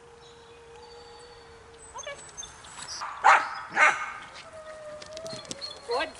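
A dog barks twice, about half a second apart, a little past the middle.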